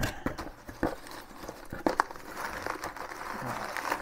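A cardboard box being handled and rummaged through: a few light knocks and taps as it is shifted, with rustling of packaging inside.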